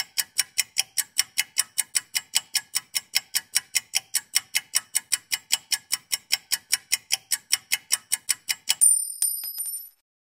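Countdown timer sound effect: a clock ticking fast and evenly, about four ticks a second, then about 9 s in a high ringing ding that marks time up.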